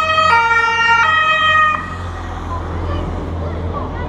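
A motorcycle siren sounds a stepped sequence of three pitches, each held under a second, and cuts off just under two seconds in. A low engine hum and street noise carry on after it.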